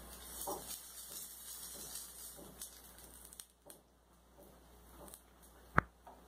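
Faint sizzle of semolina-batter toast frying in a little oil in a pan, with soft scrapes of a spatula sliding under the bread, and one sharp click near the end.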